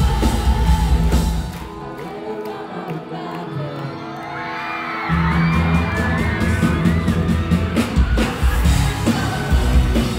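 Pop-punk band playing live, loud through the venue PA and recorded from the audience. About a second and a half in, the drums and bass drop out, leaving a quieter stretch with whoops and singing over guitar, and the full band crashes back in about five seconds in.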